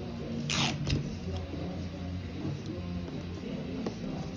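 A strip of clear adhesive tape pulled off the roll with a brief rasp about half a second in, then soft rustling of paper and tape pressed down by hand.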